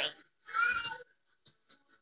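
One short meow-like call, about half a second long, a little under half a second in, followed by a couple of faint clicks.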